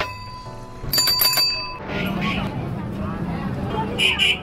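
A bicycle bell rung briefly about a second in, a quick run of rapid strikes ringing for about half a second.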